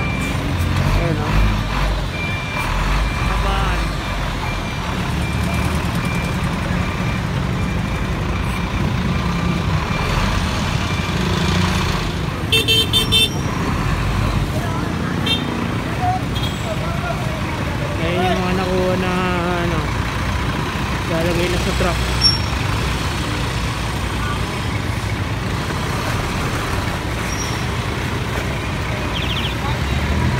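Busy street traffic with a large diesel dump truck running close by, a continuous low rumble. About halfway there is a quick run of rapid horn beeps, and people's voices carry over the traffic.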